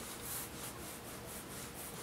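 Graphite pencil scratching across drawing paper in a quick run of short strokes, laying down the rough gesture lines of a figure.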